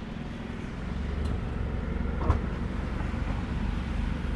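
A car tailgate being unlatched and swung open, with a short click about two seconds in, over a steady low rumble.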